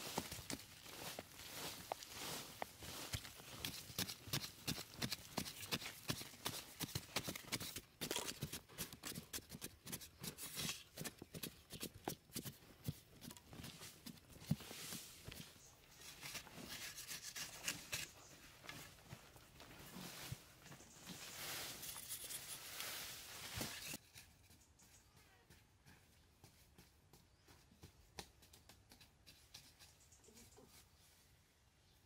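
Short-handled digging tools chopping and scraping into dry, crumbly earth, with clods breaking and soil falling in quick, irregular strokes. About 24 seconds in the sound drops to fainter, sparser scraping.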